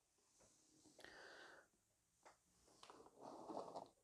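Near silence: room tone with a few faint rustles and a small tick as a card is turned on a tabletop.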